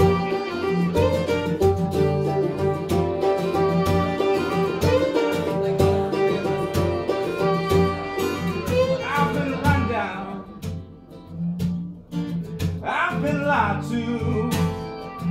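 Fiddle, acoustic guitar and mandolin playing together, the fiddle carrying the lead over strummed chords. The playing thins out and drops in level about ten seconds in, and a voice begins singing near the end.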